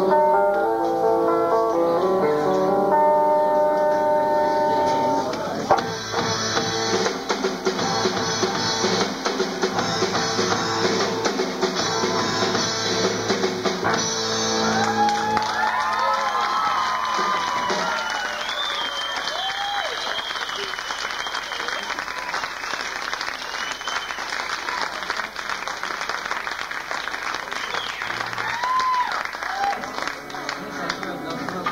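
A live band's guitar-led instrumental ending, with held chords that stop about halfway through. Audience applause and cheering rise under the last chords and carry on after the music ends.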